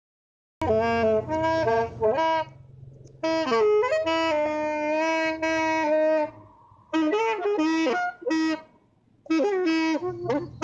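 Solo wind instrument playing a melody live, in short phrases of held notes with pauses between them and one note bent down and back up about three and a half seconds in.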